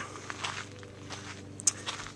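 Footsteps of a person walking on dry dirt ground, a few soft steps.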